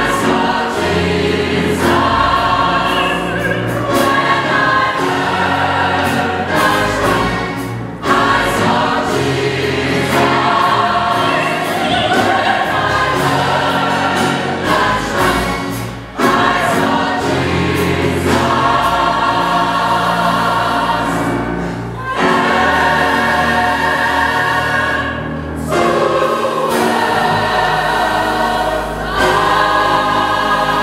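Large mixed gospel choir singing in harmony, in phrases of a few seconds each, over a low bass line.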